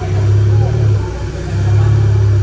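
Volkswagen Jetta 2.0 TSI turbocharged four-cylinder running, with a low, loud exhaust drone that swells twice.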